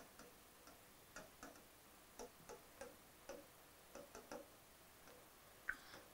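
Near silence with faint, irregular ticks of a marker pen tapping and stroking across a whiteboard as words are written.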